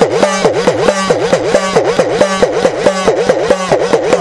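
Udukkai, the small laced hourglass drum of Tamil folk worship, played fast with the hand at about four strokes a second, its pitch dipping and rising again with each stroke as the lacing is squeezed, giving a wavering, talking drone.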